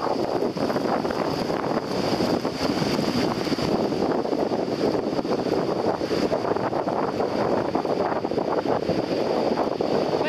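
Wind buffeting the camera microphone over the wash of shallow surf, with a steady high-pitched tone underneath.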